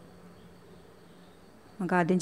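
Faint steady low hum and room noise, with no distinct event; a woman's voice starts near the end.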